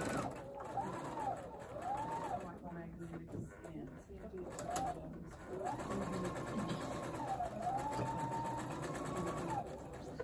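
Electric sewing machine stitching a seam in several runs: two short runs, then a longer one of about four seconds in the second half. The motor's whine climbs and falls in pitch as the machine speeds up and slows, over the rapid ticking of the needle.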